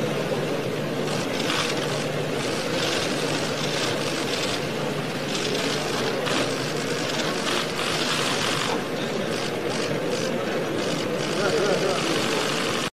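Steady hubbub of a crowd, many voices chattering together without any single voice standing out.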